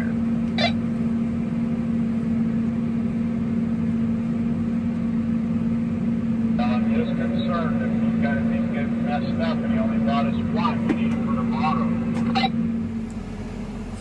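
Combine harvester running steadily, heard from inside the cab as a constant drone. From about halfway through, a voice answers over a handheld two-way radio. The drone stops suddenly near the end.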